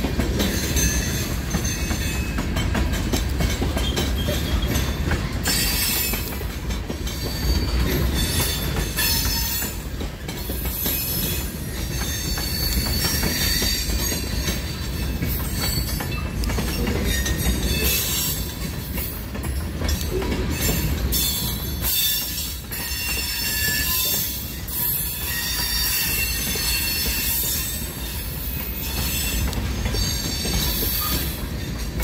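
Freight train tank cars rolling past close by: a steady low rumble of steel wheels on rail, with high-pitched wheel squeal that comes and goes through most of it from a few seconds in.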